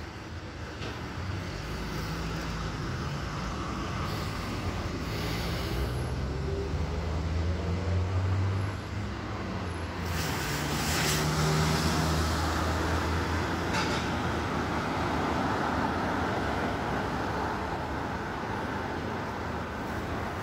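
Road traffic: motor vehicles passing on the street, an engine rumble with tyre noise swelling to a peak about eight seconds in, dipping briefly, then swelling again around eleven to twelve seconds.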